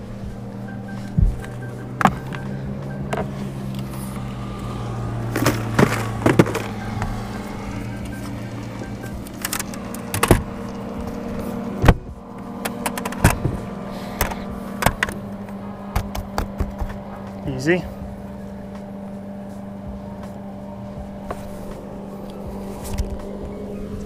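Scattered knocks and clicks as a just-caught crappie and a measuring board are handled on a boat deck, over a steady low hum.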